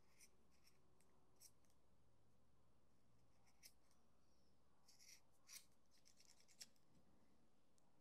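Near silence with a few faint scissor snips as the ends of jute twine are trimmed, the clearest about five and a half seconds in.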